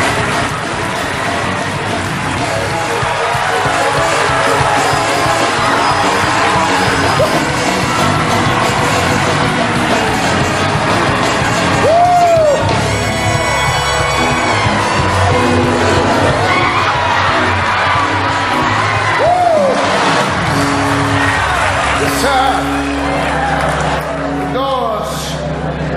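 Upbeat gospel church music with a congregation cheering, whooping and shouting over it; in the second half, held keyboard chords come through.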